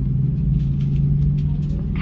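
Steady low drone inside the cabin of an Airbus A330-300 as it taxis, with a constant low hum from the engines and cabin systems.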